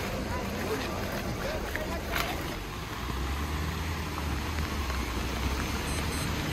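Steady rushing noise of a fast-flowing river close by, with a low engine hum that comes up about three seconds in.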